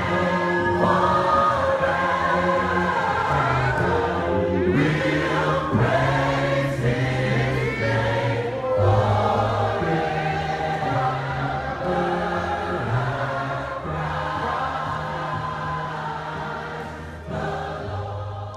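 A gospel choir sings a worship song in long held notes over a steady low accompaniment. It grows softer near the end.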